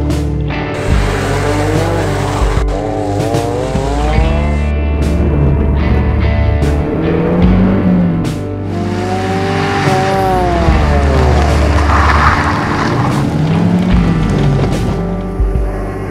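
Ford Sierra RS Cosworth's turbocharged four-cylinder engine under hard acceleration, its pitch rising and falling twice as it revs and comes off, over background music.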